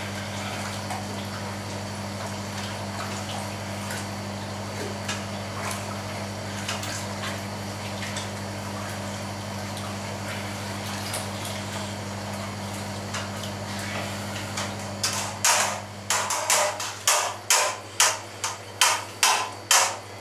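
Steady low electrical hum with faint splashes as a hand works sheep's-milk curd in whey in a steel cauldron. About three-quarters of the way through, a run of louder rhythmic splashes starts, about two a second, as the curd is stirred through the whey.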